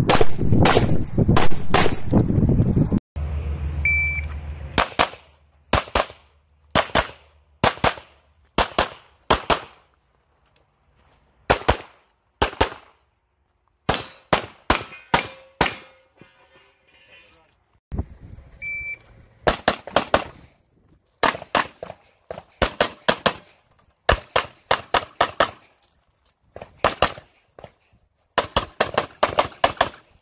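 9mm Glock 34 pistol fired in fast strings, mostly quick pairs of shots with short pauses between target arrays. A short electronic shot-timer start beep sounds about four seconds in and again just before the twenty-second mark, each followed by the next string of shots.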